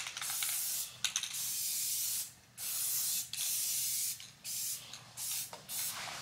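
Aerosol spray paint can hissing in a series of bursts, most about a second long, with short breaks between, as letter outlines are sprayed onto a wall.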